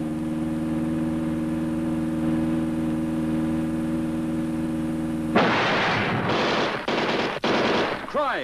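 A held orchestral chord of theme music, then about five seconds in a sudden loud crash followed by several short bursts of gunfire: a car smashing through a border-checkpoint barrier under fire.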